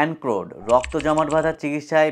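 A man narrating in Bengali, with a short run of keyboard-typing clicks laid under the voice about half a second in.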